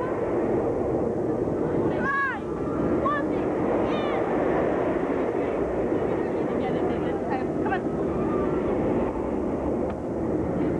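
Busy crowd chatter over a steady din, with a few raised voices about two, three and four seconds in.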